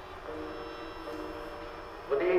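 Quiet passage of live ensemble music: a few steady held notes that shift pitch about a quarter-second and about a second in.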